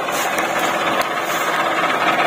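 Tractor diesel engine running steadily at low revs as the tractor creeps forward over a field of cut sugarcane stalks.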